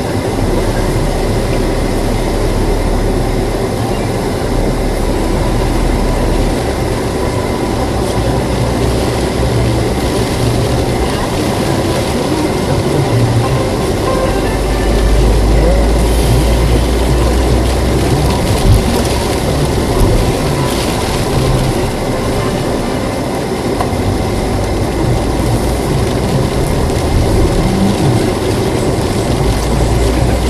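Steady engine and road noise heard inside a moving car, with the hiss of tyres on a wet road surface.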